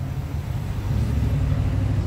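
Low, steady outdoor rumble with no speech.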